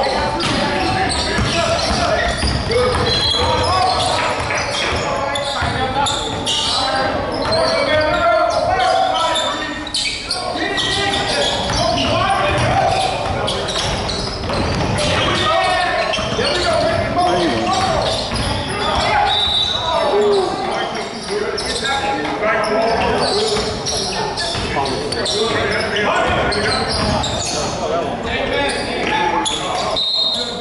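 A basketball bouncing and being dribbled on a hardwood gym floor during play, with players calling out to each other. All of it echoes in a large gymnasium.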